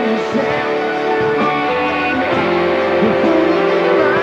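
A rock band playing live, with guitar to the fore.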